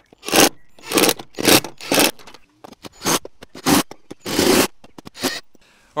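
A Ryobi ONE+ 18 V cordless impact driver driving screws through the awning arm bracket into the caravan wall, in about nine short bursts of rattling, each under a second long.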